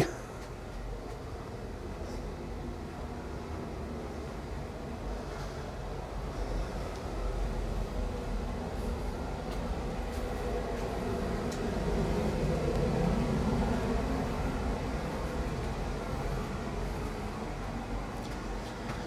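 Basement heating boiler running: a steady low rumble that swells a little in the middle stretch.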